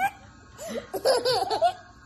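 Toddler laughing: a run of short, bouncing bursts of laughter about half a second in that stops shortly before the end.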